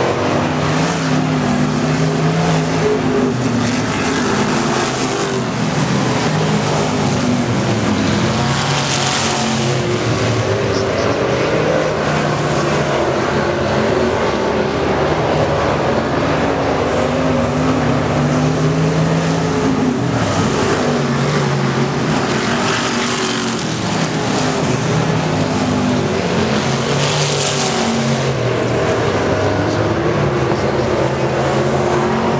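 A field of dirt-track race cars running laps, their engines rising and falling in pitch as they go around. The sound swells as cars pass closer, about nine seconds in and twice more near the end.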